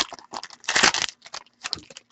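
Crinkling and tearing of trading-card packaging as sports cards are unwrapped and handled, in several short bursts, the loudest about a second in.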